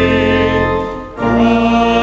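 Choir singing a hymn with organ accompaniment, holding chords over low sustained organ notes. A short break comes about a second in between phrases, then a new chord begins.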